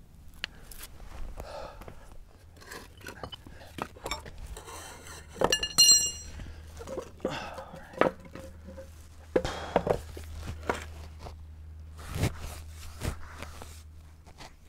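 Concrete pavers being handled and stacked, a series of irregular knocks and thunks of block against block. One sharp ringing clink comes about five and a half seconds in.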